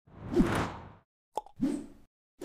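Intro-animation sound effects: a swelling whoosh with a short falling tone, a brief pop about one and a half seconds in, then a second, shorter whoosh.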